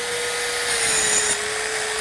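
Rotorazer compact circular saw running and cutting through a rubber garden hose. It is a steady motor whine whose pitch sags slightly in the middle as the blade bites through the hose.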